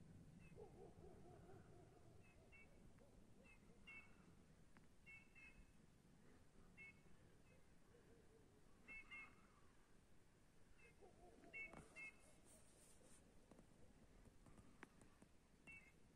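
Faint, short soft whistled calls of Eurasian bullfinches, repeated at irregular intervals of about a second, with a fainter low wavering sound near the start and again about eleven seconds in.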